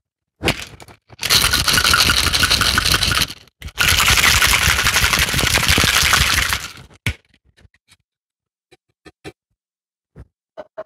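Ice shaken hard in a tin-on-tin metal cocktail shaker, in two bouts of about two and three seconds with a short break between, then a single sharp knock and a few light clicks.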